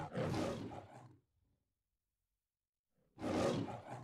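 The MGM lion roaring on the studio logo, twice: the first roar dies away about a second in, and after a silent gap a second roar starts about three seconds in.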